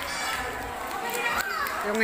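Children's voices and chatter in the background, with one higher call that rises and falls about one and a half seconds in.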